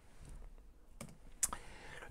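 A quiet pause with two short clicks, about a second in and half a second later, like a key or mouse button pressed to advance a presentation slide.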